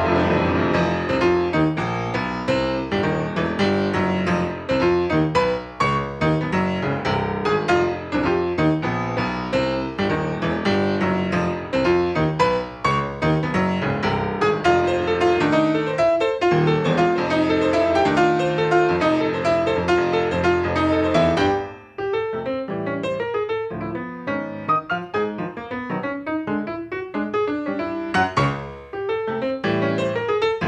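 Steinway grand piano played solo in a Latin jazz style: dense chords over held bass notes, breaking off for a moment about two-thirds of the way through, then lighter, sparser playing.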